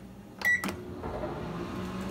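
Microwave oven keypad giving one short high beep as START is pressed, about half a second in. The oven then starts running with a steady low hum.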